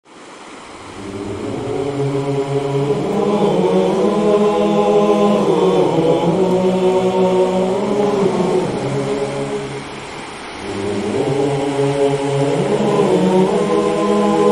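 Background music of voices chanting in long held chords, fading in over the first two seconds, with a brief dip about ten seconds in.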